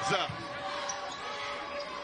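A basketball being dribbled on a hardwood court, over the steady background noise of an arena crowd.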